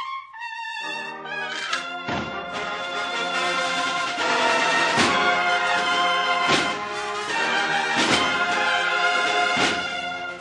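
A cornetas y tambores band plays a Semana Santa procession march: massed cornets (valveless bugles) carry the melody over snare and bass drums. The sound is thin for the first second, then the full band comes in, with heavy drum strokes about every second and a half.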